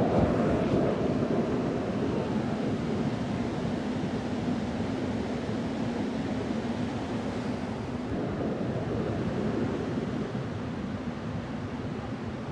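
The Rhine Falls, a large waterfall, with white water pouring and churning over rocks in a steady, low rush that grows slightly quieter toward the end.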